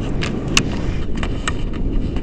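Wind rushing over an action camera's microphone as a tandem paraglider lifts off, a loud steady low rumble. Scattered light clicks and knocks from the harness, lines and camera pole run through it.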